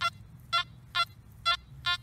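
Nokta Makro Anfibio metal detector sounding short, repeated target beeps, about two a second, as the coil is swept back and forth over a buried target reading in the 60s. The detectorist takes the target for aluminium or a pull tab.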